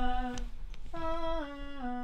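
A single singer's voice recording a vocal take: a held note stops shortly after the start, and after a brief gap a second long note steps down in pitch in several small steps.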